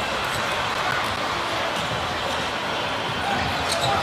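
A basketball being dribbled on a hardwood court over a steady haze of arena crowd noise.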